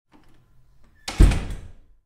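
A single loud bang about a second in, fading out within about half a second, after a little faint scuffling noise.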